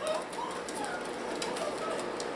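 Shiba Inu dogs and puppies playing on a wooden floor: faint, soft whimpering calls in the first second, with light scattered ticks of claws on the floorboards.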